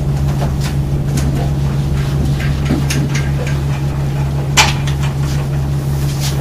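A steady low hum during a pause in speech, with a few faint light clicks and one sharper click about four and a half seconds in.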